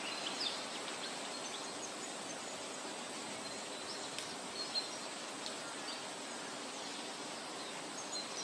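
Steady outdoor ambience, a soft even hiss with a few faint, short bird chirps.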